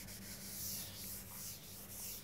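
Chalkboard eraser rubbing across a chalkboard in soft back-and-forth strokes, about two a second, over a faint steady hum.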